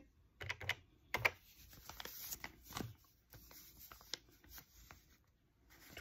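Separate key presses clicking on a Texas Instruments TI-5045SV desktop calculator, with soft rustling of a paper envelope being handled.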